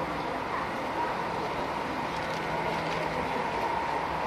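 Steady murmur of a large crowd of spectators, with a faint steady hum underneath.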